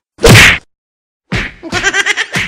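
A single loud whack lasting about half a second, followed by a second of total silence. Rhythmic music with beatbox-like percussion then starts.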